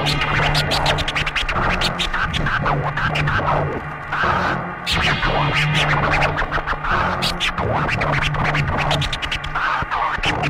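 DJ scratching a vinyl record on a turntable in a drum and bass mix: rapid back-and-forth scratches over a held low bass note, with a short dip about four seconds in.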